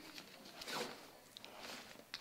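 Faint rustling of a nylon backpack and the fabric inside it as a hand rummages and pulls out a piece of cloth, in two soft swells with a couple of light clicks.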